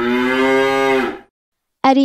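A cow mooing: one long, steady call that fades out a little over a second in.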